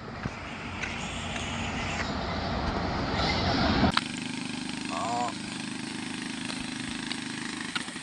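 A bus approaching along the road, its engine and tyre noise growing steadily louder for about four seconds before cutting off suddenly. After that a quieter, steady background runs on, with one short voice sound about a second after the cut.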